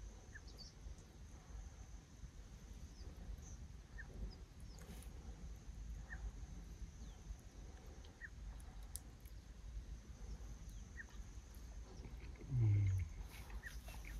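Faint open-field ambience: a low steady rumble, a thin steady high insect drone, and short rising bird chirps every second or two. Near the end a man's voice makes one brief low hum.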